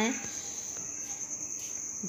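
A steady high-pitched cricket trill in the background, with faint sloshing and scraping of a ladle stirring rice and water in a metal pressure cooker.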